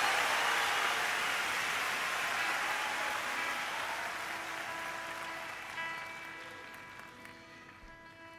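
Arena concert crowd applauding, the applause dying away steadily. From about halfway, a few quiet, held instrument notes begin under it.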